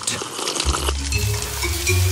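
Sizzling of food cooking in a pot or pan, a steady hiss, as a cooking sound effect. Low background music comes in under it about half a second in.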